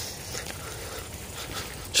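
A dog panting quietly.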